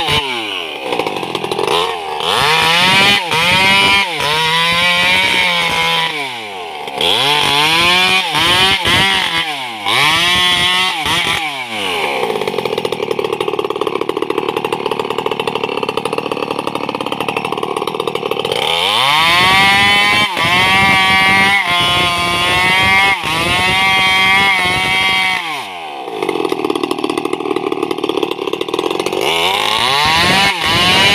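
Two-stroke petrol chainsaw cutting a tree trunk. It revs up and drops back several times in quick succession, then is held at steady full throttle for several seconds while the chain cuts. This happens twice.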